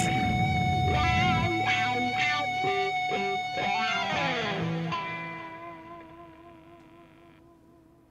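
Closing bars of a hard rock song played on electric guitar and keyboards: a held note, a short run of wavering lead notes, and a downward slide into a final chord that rings out and fades away to near silence.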